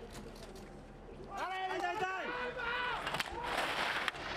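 A voice shouting at the slalom start, a quick run of rising and falling calls about a second and a half in, then fainter calls. Near the end comes a steady hiss of slalom skis scraping over hard snow.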